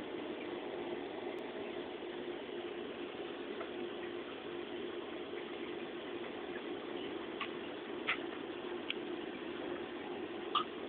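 Steady low background hum, with three faint clicks of scientific calculator keys being pressed near the end.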